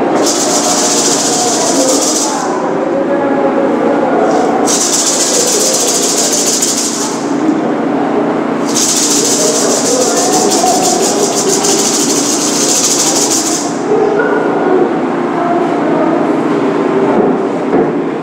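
A hand rattle shaken in three bursts, the last one the longest at about five seconds, over a continuous background sound.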